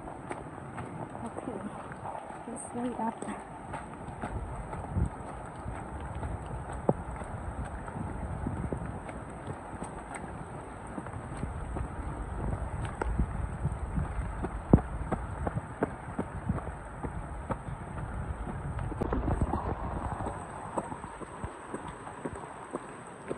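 A trail runner's footsteps on a wet dirt trail and concrete steps, with hard breathing from running uphill.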